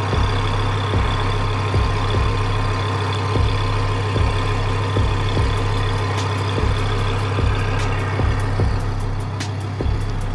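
A motor vehicle's engine running steadily with a low hum, punctuated by frequent short low thumps, and a few faint ticks in the second half.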